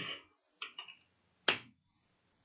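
Computer keyboard keystrokes: three quick light clicks a little after half a second in, then one sharper click about a second and a half in.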